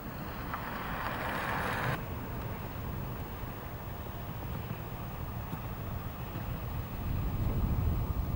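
Wind rumbling on a camcorder microphone outdoors, with a rushing hiss that cuts off suddenly about two seconds in. The low rumble swells again near the end.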